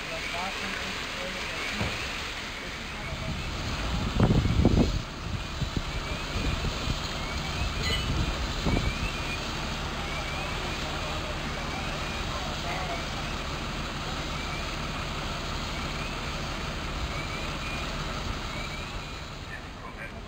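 Steady rushing noise of a fire scene, fire-hose water jets and running fire engines, with a faint short chirp repeating throughout. A loud low rumble, the loudest sound, comes about four seconds in.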